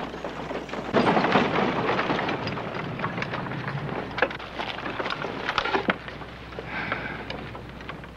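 A horse-drawn buggy rolls up and stops: a rattle and crunch of wheels on dirt, mixed with hoofbeats and scattered knocks. It swells about a second in and eases off toward the end.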